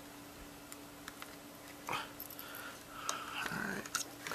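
Faint clicks and taps of hands working a circuit board loose from a small electronic device's plastic casing, one sharper click about two seconds in, over a steady low hum. A faint murmured voice comes in over the last second or so.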